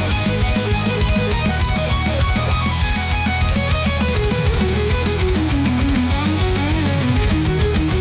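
AI-generated heavy metal instrumental: an electric guitar solo playing fast runs of notes that climb and fall, over drums and a steady bass.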